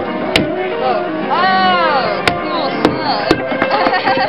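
Short metal pipe clubs whacking fish on a wooden table. There are about six sharp strikes: one early, then a quick run in the second half. A person's voice rises and falls in a cry near the middle, over people talking.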